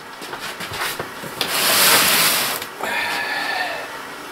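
Rough rasping noise against a cardboard shipping box, starting about a second and a half in and lasting about a second, followed by a quieter scratchy scraping.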